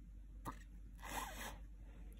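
Faint handling of a glossy magazine page: a small tick about half a second in, then a short paper rustle about a second in.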